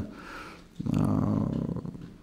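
A man's low, creaky drawn-out hum lasting about a second, a wordless hesitation sound between phrases, after a faint breath.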